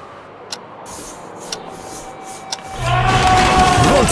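Sharp ticks about once a second, then near the end a sudden loud crash of a wall breaking open under a man's long shout of "Runter!".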